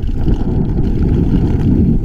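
Mountain bike rolling fast down a dirt trail: a steady, loud rumble of wind buffeting the camera microphone mixed with tyre and trail noise.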